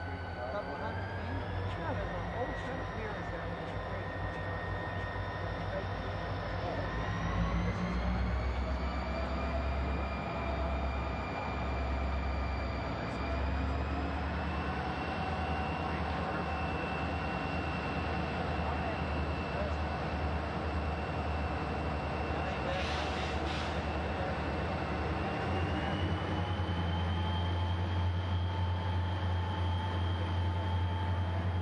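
Diesel-electric freight locomotives running under power as the train pulls away. There is a heavy low rumble, and the engine note rises in pitch in several steps as the throttle is notched up. A brief hiss comes about three quarters of the way through.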